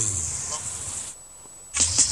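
Dancehall sound-system session tape: the music and voice fade out into a brief gap of hiss with one thin high tone, then the rhythm and a voice cut back in near the end.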